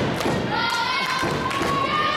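Echoing gymnasium din at a girls' volleyball match: high-pitched girls' voices calling out in long held tones, over a few dull thumps on the hardwood court.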